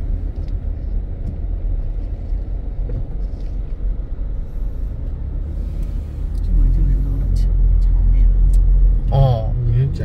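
Low, steady rumble of a car moving in slow traffic, heard from inside the cabin, growing louder about two-thirds of the way through.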